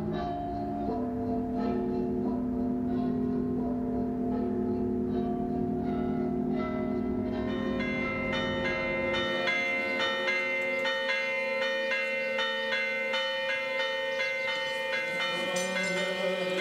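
Church bells ringing: several bells at different pitches, their tones overlapping and ringing on. About halfway through, higher bells take over with quicker, denser strokes.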